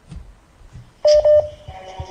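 Two short electronic telephone-line beeps about a second in, followed by a quieter steady tone, on the call-in phone line that is being connected.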